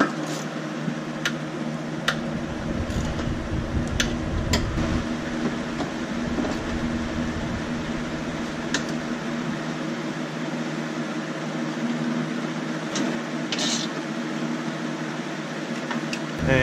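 A steady mechanical hum runs throughout, with a few sharp clicks scattered through it from hand tools working on the suspension subframe bolts.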